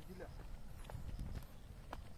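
Footsteps on bare rock: a few separate sandal steps and scuffs.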